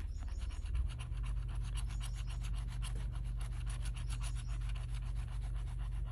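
Scratch-off lottery ticket being scraped with a handheld scratcher tool in rapid back-and-forth strokes, the tool rasping as it rubs off the latex coating.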